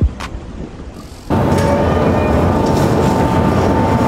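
The end of an intro music sting with a single hit at the start, then about a second in a sudden cut to loud city street noise: traffic rumble with a faint steady whine.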